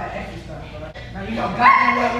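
A woman imitating a dog with her voice: quieter low whimpers, then a loud high-pitched whine about a second and a half in that jumps up in pitch and holds briefly.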